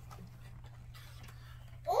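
Faint taps and rustles of a small cardboard toy box being handled, over a steady low hum; a voice begins right at the end.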